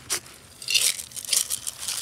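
A metal scoop digging into a bucket of feed pellets, the pellets rattling and crunching against it in several short bursts.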